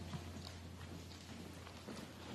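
Faint footsteps on a hard floor: a few soft, irregular knocks over a steady low hum of room noise.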